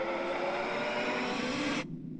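Film soundtrack: a sustained chord of low tones over a dense rushing noise, cut off abruptly near the end.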